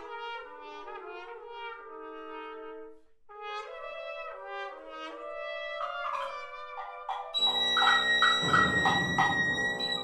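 Contemporary chamber ensemble playing: overlapping held brass notes, broken by a short gap about three seconds in, then a louder, dense passage with sharp accented attacks from about seven seconds in.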